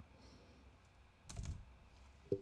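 Faint typing on a computer keyboard: a click near the start and a brief, louder burst of keystrokes about a second and a half in, over a low room hum.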